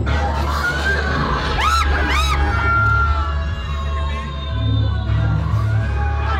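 Loud music with a steady deep bass drone, and two short high-pitched screams close together about two seconds in.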